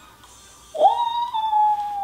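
A single long, high-pitched whining cry: it swoops up sharply about a second in, then holds one high note that sags slowly lower.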